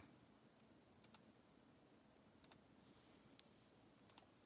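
Faint computer mouse clicks: two quick double clicks about a second and a half apart, over near silence.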